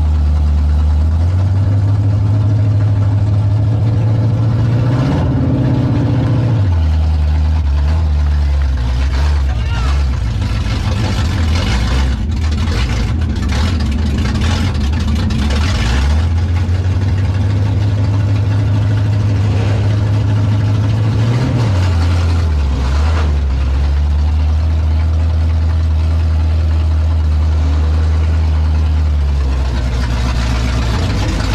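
Race car engine heard from inside the cockpit, running low and steady at idle as the car rolls slowly. It rises in pitch twice, about five seconds in and again around twenty-one seconds, and settles back each time.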